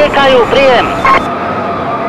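A voice on a police two-way radio channel repeating a number over and over, breaking off a little after a second in. A steady high tone with radio hiss follows.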